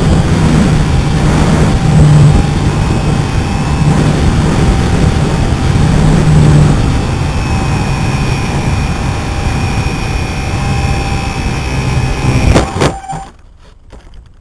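Onboard audio from a HobbyZone Super Cub RC plane: wind noise and the electric motor and propeller whining steadily in flight. Near the end come a few knocks as the plane touches down on grass, and then the motor cuts out and the sound drops away.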